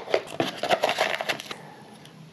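Seal being peeled off the mouth of a plastic powder tub and handled: a quick run of small crinkling crackles that dies away about a second and a half in.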